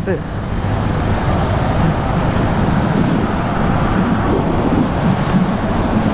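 Motorcycle engine running steadily at highway cruising speed, about 85 km/h, with wind rushing over the camera's microphone.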